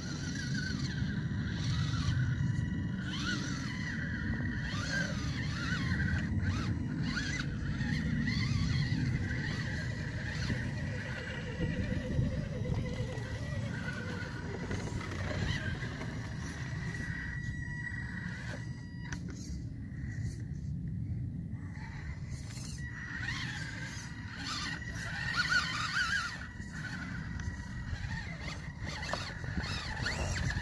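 Small electric RC rock crawler's motor and gears whining, rising and falling with the throttle as it climbs rock, with tyres scraping and clicking on stone; the whine stops for a couple of seconds about two-thirds of the way through, then resumes. A steady low rumble sits underneath.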